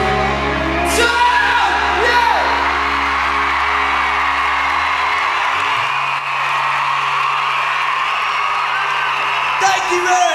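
A live pop-rock band's amplified guitar and bass chords held and left ringing at the end of a song, over a large crowd screaming and cheering throughout. About five and a half seconds in, the chord gives way to a single held low note.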